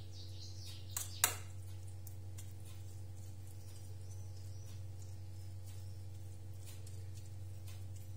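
Faint rustling and light pats of grated cucumber being pressed by hand into a steel ring mould, with two sharp clicks about a second in, over a steady low hum.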